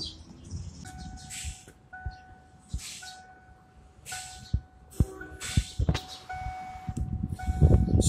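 A steady electronic tone sounding in stretches of about a second with short gaps, like a vehicle chime, over soft clicks and knocks from a handheld scan tool being handled.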